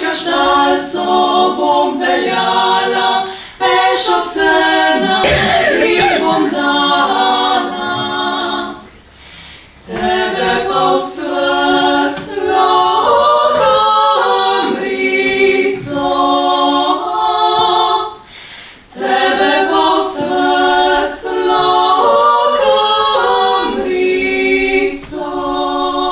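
A quartet of women singing a cappella in close harmony, with no instruments. The song comes in phrases, with short pauses about 9 seconds in and again just before 19 seconds.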